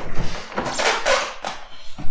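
Rustling of a leather racing suit as a rider settles into a tucked riding position on a motorcycle held on a stand, ending in a brief click about a second and a half in.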